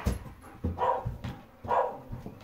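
A German Shepherd gives two short barks about a second apart, in play while having its back scratched.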